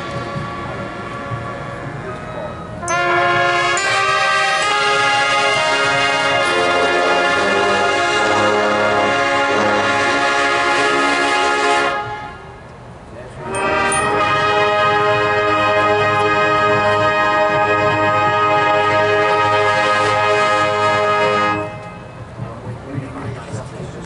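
Marching band's brass and winds playing loud, long held chords: a quieter passage gives way about three seconds in to a full chord, a short break about twelve seconds in, then a second long chord that cuts off a couple of seconds before the end.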